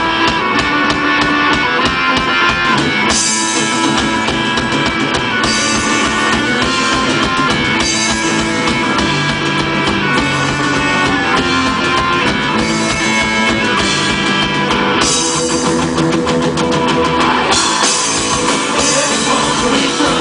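Live punk band playing at full volume: distorted electric guitars, bass and a drum kit pounding out a fast, steady beat.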